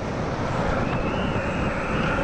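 Downhill longboard's urethane wheels rolling fast on asphalt, with wind rushing on the microphone; a thin high whine joins about a second in as the board leans into a toe-side corner.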